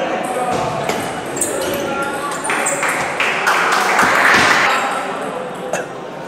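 Table tennis rally: the celluloid-type ball clicking sharply off bats and table in quick succession, over the chatter of a crowd in a large hall, which swells about four seconds in.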